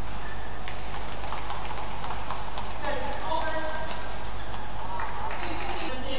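Badminton rally: a few sharp racket-on-shuttlecock hits spaced a second or more apart, with squeaking shoes on the court floor and hall ambience.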